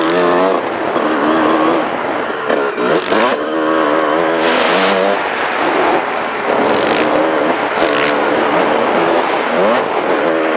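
Dirt bike engine heard on board while riding a motocross track, its revs rising and falling again and again with throttle and gear changes. Several short, loud noise bursts cut in along the way.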